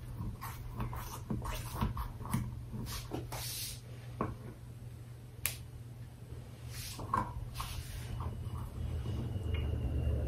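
Scattered soft scrapes and small clicks of a utensil working against a glass baking dish as a piece of frosted sheet cake is cut and lifted out, over a steady low hum.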